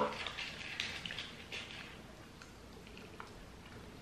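Faint wet mouth clicks and lip smacks from licking sweet sticks dipped in sherbet powder, thinning out to a few isolated ticks after the first couple of seconds.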